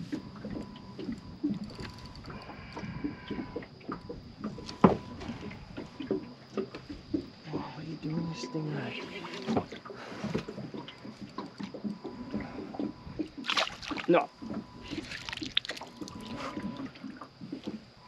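Scattered knocks and clicks of rod, reel and hull as a hooked barramundi is fought beside a small boat, with bursts of splashing near the end as the fish is lost at the boat after the hooks pull.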